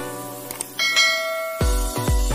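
Background music with a bright bell chime about three quarters of a second in, the ding sound effect of a subscribe-and-bell animation. Near the end a heavy bass beat kicks in.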